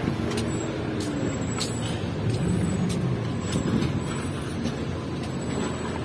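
Steady hum of street traffic and vehicle engines, with the footsteps of someone walking, heard as light clicks about every half second.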